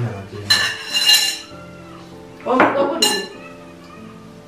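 Dishes and cutlery clattering and clinking with a metallic ring, in two bursts: about half a second in and again from about two and a half seconds. Quiet background music runs underneath.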